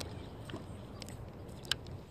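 Soft handling noise close to the microphone: a low steady rustle with a few light clicks, the sharpest about three-quarters of the way through.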